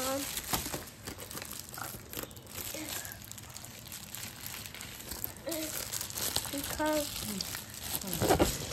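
Plastic mailer bag crinkling and rustling as it is handled and pulled at to get it open, near the start and again later on.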